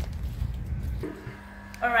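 Low rumble of wind and handling noise on the microphone. About halfway through it gives way to a quieter steady hum in the ice-cream production room, and a woman starts speaking near the end.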